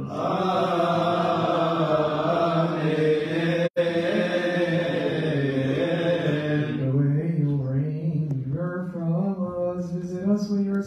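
Voices chanting a Coptic Orthodox liturgical hymn without words the recogniser could catch. About a third of the way in the audio cuts out for an instant, and after about seven seconds the chant thins to fewer, clearer voices.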